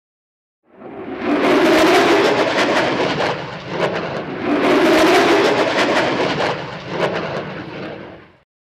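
Jet aircraft engine noise: a loud, crackling rush that rises about a second in, swells twice, and fades away near the end.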